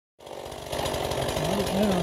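Small two-stroke chainsaw engine running steadily with a fast, even firing pulse, getting a little louder after the first half-second; a man's voice starts over it near the end.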